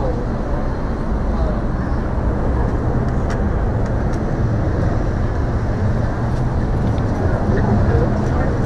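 Steady street traffic noise from a busy city intersection, a low rumble of passing cars, with faint voices of passers-by and a few light clicks.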